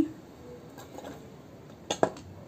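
A coil of metal wire handled and set down, with one short, sharp clink near the end; otherwise quiet room tone.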